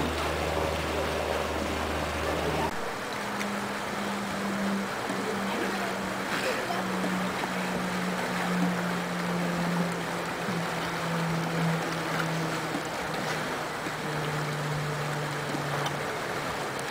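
Outdoor pool ambience: a steady rush of moving water and wind on the microphone. A low steady hum underneath gives way to a somewhat higher hum about three seconds in.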